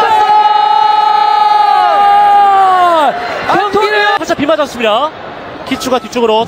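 A football commentator's long, held shout at one high pitch for about three seconds, dropping off at the end, then more excited shouted commentary, over crowd noise: a goal call.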